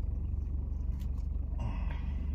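Car engine idling, heard inside the cabin as a steady low hum. A short faint sound comes about one and a half seconds in.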